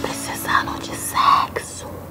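A woman whispering a few breathy syllables, the loudest a little after one second in.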